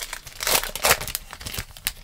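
Foil wrapper of an NBA Hoops trading-card pack crinkling and tearing as it is pulled open by hand, loudest about half a second in.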